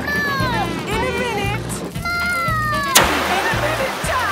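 Cartoon background music with a steady beat and falling, sliding tones. About three seconds in comes a sudden loud hiss of a fire extinguisher spraying.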